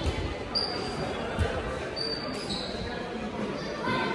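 A few dull thumps, with two brief high-pitched squeaks, over a murmur of background voices in a large room.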